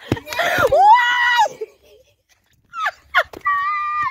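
A female voice screaming in fright: one long high scream about a second long near the start, then a shorter held scream near the end, with a couple of sharp knocks at the very start.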